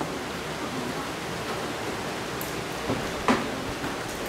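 Steady hiss of room noise, with two short taps of chalk on a chalkboard about three seconds in.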